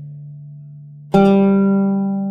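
Oud's open D course (D3) ringing and fading. About a second in, the open G course (G3) is plucked with the risha and rings on, slowly dying away. These are the open strings being sounded one by one to demonstrate the tuning.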